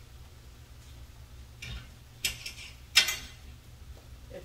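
Two sharp clicks, the first about two seconds in and the second, louder one just under a second later, over a steady low hum.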